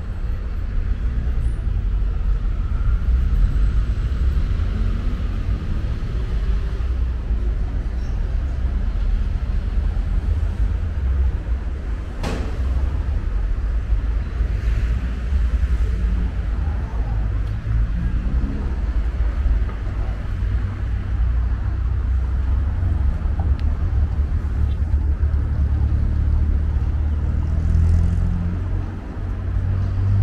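City street traffic: cars running and passing, their engines rising and falling over a steady low rumble, with one sharp click about twelve seconds in.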